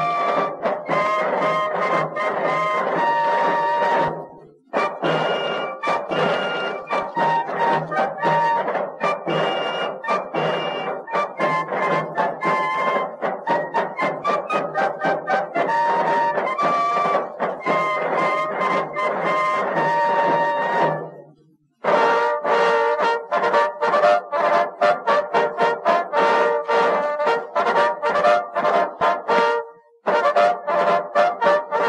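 Military fife and drum corps playing a march medley: fifes carry the tune over rapid drum strokes. The music stops briefly twice, about four seconds in and about twenty-one seconds in, as one tune gives way to the next.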